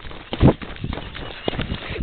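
Footsteps walking over grass and leaf litter: a few heavy thuds, the loudest about half a second in, with rustling in between.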